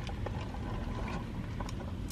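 Steady low rumble of background noise inside a car cabin, with a couple of faint clicks.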